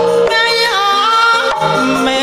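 Javanese gamelan music accompanying a tayub dance, with a woman's voice singing a line that glides and wavers in pitch over steady held instrument tones.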